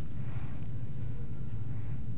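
Steady low hum of room tone with no distinct sounds in it.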